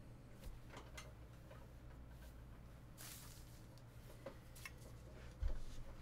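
Faint handling of trading cards on a table mat: scattered light clicks and ticks, a short rustle about three seconds in, and a low thump a little before the end, the loudest sound.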